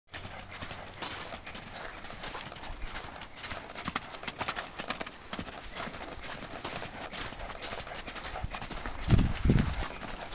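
Horse cantering on a lunge line, its hoofbeats landing in a rapid, uneven patter on dirt arena footing. Two louder low bursts come near the end.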